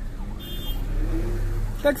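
Car interior while driving: a steady low engine and road rumble, with the engine note rising a little about a second in as the car picks up speed. A short high electronic tone sounds about half a second in.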